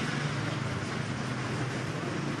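Steady background noise: an even hiss with a low, steady hum underneath, the kind of constant drone of traffic or machinery heard in an outdoor press gaggle.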